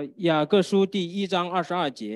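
Speech: a person speaking a short run of syllables.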